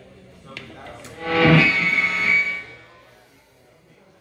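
Electric guitar through a distorted, effects-laden amp: a loud swelling chord about a second in that rings for about a second and a half and fades away.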